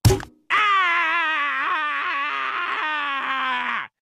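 A sharp crunch as a soda can is crushed against a forehead, then a long, strained groan held for about three seconds, its pitch sinking slightly toward the end.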